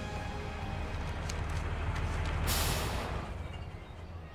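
Heavy truck's diesel engine idling low and steady, with a short hiss of air from its air brakes about two and a half seconds in.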